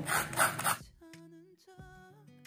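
Kitchen knife scraping the skin off a raw carrot: about three quick scraping strokes in the first second. Faint soft guitar music follows.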